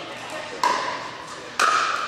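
Paddles striking a plastic pickleball in a fast doubles rally: two sharp pocks about a second apart, each with a brief ringing tone.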